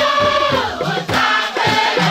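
Many voices singing together in a chorus over a steady beat.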